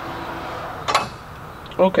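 A single sharp metallic clink about a second in, as metal parts or a hand tool knock together during work under the hood.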